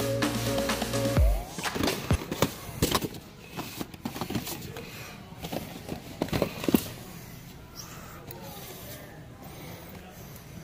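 Background music that stops about a second in, then handling noise: scattered clicks and knocks of a plastic blister-packed action figure being picked up and held.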